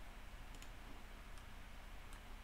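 Faint computer mouse clicks: a quick double click about half a second in and a single click a little before the end, over a low steady room hum.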